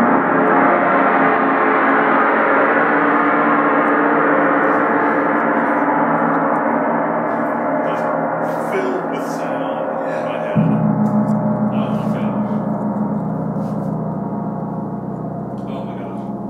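Paiste 32-inch Planet Gong (Chiron, tuned to D#2) played with a soft mallet: a dense, shimmering wash of overtones that slowly fades. About ten and a half seconds in a new stroke brings in a deeper tone that pulses in loudness as it dies away.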